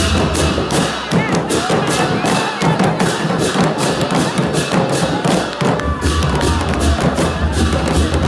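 Newari dhime barrel drums and cymbals played in a street procession: a rapid beat of drum strikes and cymbal clashes over the shouting and chatter of a dense crowd.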